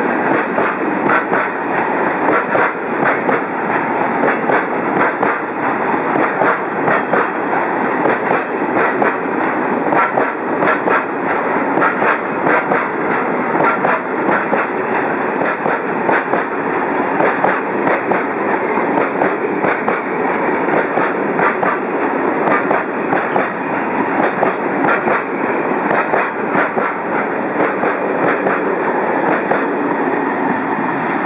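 A long freight train of covered hopper wagons rolling past close by: a steady loud rumble with a rapid, continuous clatter of wheels passing over rail joints.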